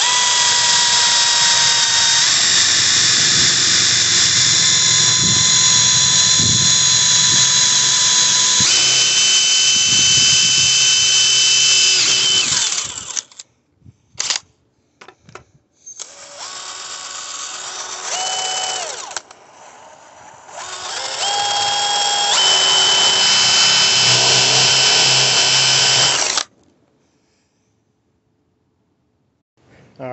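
Power drill boring new bolt holes through a metal go-kart sprocket, its motor whining steadily under load. One long run is followed by a couple of brief blips, then a quieter run and a last loud run that cuts off sharply shortly before the end.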